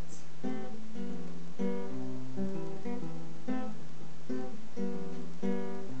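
Nylon-string classical guitar played alone: strummed chords in a steady pattern, a new chord struck about twice a second.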